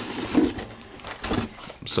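Corrugated cardboard scraping and rubbing as a boxed laptop is slid out of its cardboard shipping sleeve, with a short sharp knock near the end.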